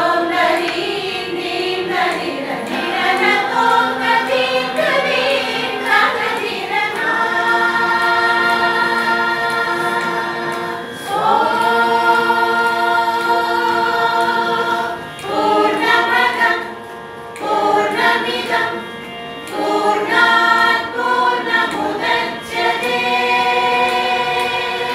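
A women's group choir singing together, holding long sustained notes between quicker, moving phrases, with a couple of short breaths or pauses in the last third.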